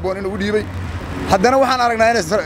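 A man speaking, with a short pause in the middle, over a low steady rumble of street traffic.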